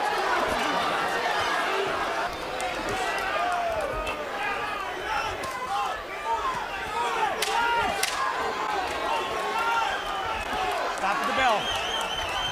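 Boxing arena crowd yelling and cheering, many voices at once, through a heated exchange in the ring. Two sharp smacks stand out a little past the middle.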